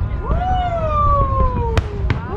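A long whoop-like call that rises quickly, then slides slowly down in pitch, over the low rumble of fireworks, with a sharp firework crack near the end.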